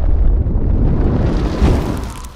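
Explosion sound effect for an animated fireball logo intro: a deep rumbling blast that carries on, with hiss building to a second hit near the end before it starts to fade.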